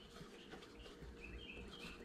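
Very quiet room tone with a run of about six faint, short high chirps from a small bird in the second half.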